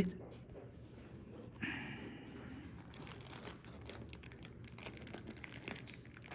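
Folding sunglasses case being opened with a short scrape about a second and a half in, then soft, irregular crinkling of the thin plastic bag around the sunglasses as it is handled and lifted out.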